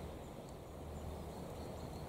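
Faint, steady outdoor background noise: a low, even rumble with a light hiss and no distinct sounds standing out.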